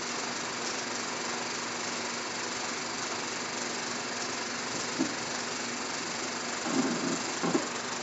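Film projector running with a steady whir and a faint hum after the film's soundtrack has ended, with a short knock about five seconds in and a few brief faint sounds near the end.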